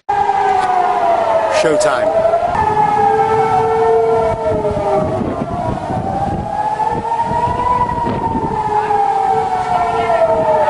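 Several sirens wailing together, each pitch slowly rising and falling over a few seconds and overlapping out of step. A sharp click comes about two seconds in.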